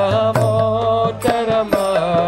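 A man singing a Sanskrit devotional chant into a microphone, holding and sliding between notes. A steady low drone and regular hand-drum strokes accompany him.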